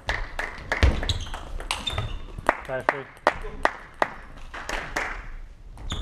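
A table tennis rally: the celluloid ball clicks sharply off the bats and the table in a quick, irregular run of hits, a few per second.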